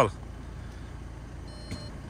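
Low steady hum of the idling Volkswagen Amarok heard inside its cab as the automatic gear selector is moved toward reverse, with a single click about one and a half seconds in. Near the end a high steady warning beep starts, which the occupants take for the open-door alarm.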